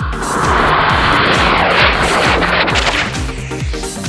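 Firework rocket strapped to a toy car burning: a loud rushing hiss that lasts about three seconds and then fades, over electronic music with a steady beat.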